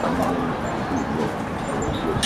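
Crowd chatter from an audience in stadium stands: many overlapping voices talking at once, with a nearer voice rising and falling in pitch.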